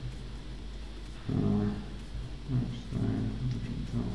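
A man's low wordless humming or murmuring in two short stretches, one about a second and a half in and a longer one around three seconds, over a faint steady low electrical hum.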